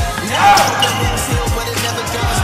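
Backing music with repeated falling bass notes over the sound of a basketball bouncing on a hardwood gym floor, with a short, loud squeal about half a second in.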